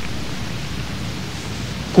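Steady hiss of the recording's background noise, even and unchanging, with no other sound in it.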